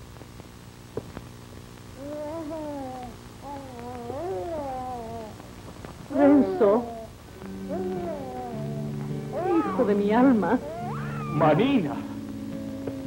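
A wavering, crying voice that rises into loud sobbing bursts about six seconds in and again near the end, over soft background music of sustained low notes.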